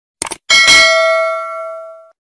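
Subscribe-animation sound effect: a quick double click, then a bell chime that starts about half a second in and rings out, fading over about a second and a half.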